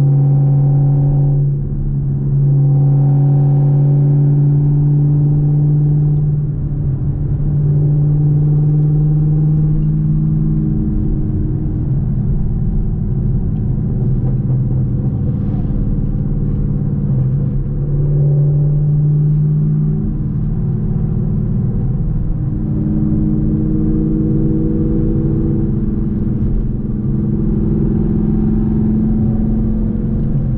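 Chevrolet Camaro running through Speed Engineering long-tube headers, heard from inside the cabin while cruising: a steady exhaust drone that steps up and down in pitch several times as the revs change, with a brief dip in loudness about a second and a half in.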